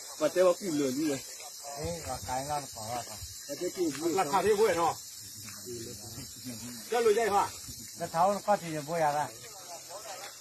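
Men talking in short, broken phrases over a steady background hiss.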